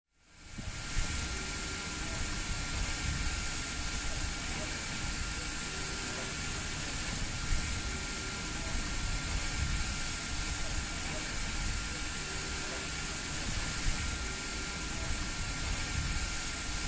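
Steady outdoor background noise fading in: an even hiss with a faint continuous high tone running through it and a low rumble underneath.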